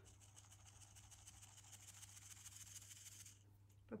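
Faint, soft scratchy rustling of flour being sifted through a metal mesh sieve as the sieve is shaken and tapped by hand; it stops about three-quarters of the way through.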